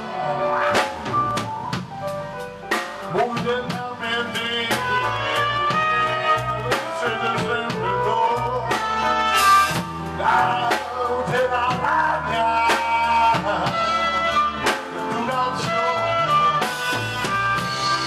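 Live band rehearsal: drum kit, electric guitar and keyboard playing a song, with a man singing into a handheld microphone.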